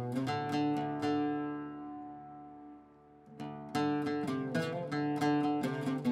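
Background music on plucked guitar: a chord rings out and fades over about three seconds, then picked notes start again.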